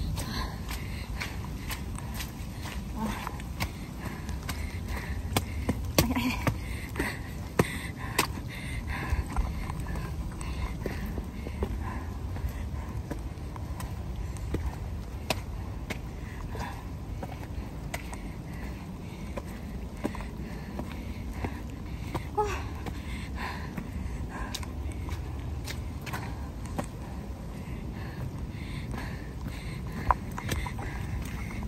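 A trail runner's irregular footsteps and small knocks of the handheld phone over a steady low rumble of wind on the microphone.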